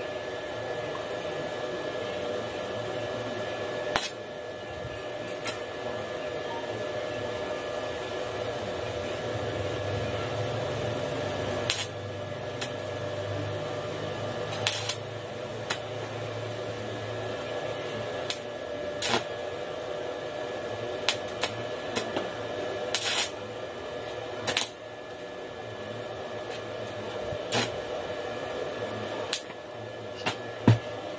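Stick (arc) welding on a steel tube frame: a steady buzzing hiss from the arc, broken by irregular sharp cracks.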